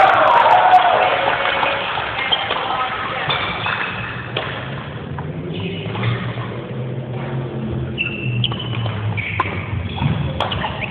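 Indoor badminton hall noise: rubber-soled shoes squeaking on the court floor, a few sharp racket hits on the shuttle in the second half, and indistinct voices echoing in the large hall, loudest in the first second or so.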